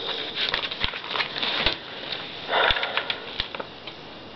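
Glossy magazine paper rustling and crinkling as it is handled, with several sharp clicks and a louder rustle about two and a half seconds in.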